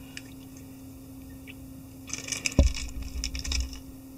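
Small clicks and rustles of hands working at a fly-tying vise, with one dull bump about halfway through, over a faint steady hum.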